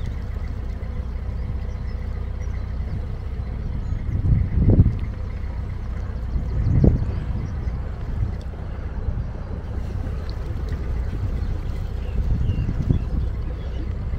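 A narrowboat's inboard diesel engine running steadily at cruising pace, a low even hum. Wind buffets the microphone twice, about a third and a half of the way in.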